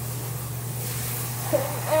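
A steady low hum with faint room noise; a child's voice starts speaking near the end.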